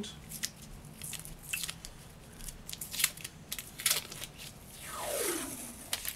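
Protective covering being picked at and peeled off a block of acrylic (Perspex): irregular crackling, tearing and crinkling as the stubborn sheet comes away, with a longer ripping rush near the end.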